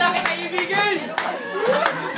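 A small group of people clapping along, with voices singing and calling out over the claps.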